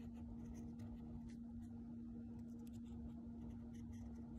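Fine-tipped pen scratching on tracing paper in many short strokes while inking a drawing, over a steady low hum.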